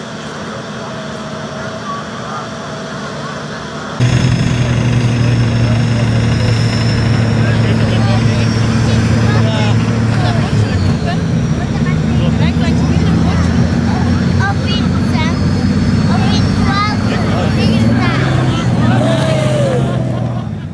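An off-road vehicle's engine running steadily under load while it pulls a sunken 4x4 out of a muddy pond on a tow line. It becomes much louder about four seconds in, and crowd voices and shouts mix in over it.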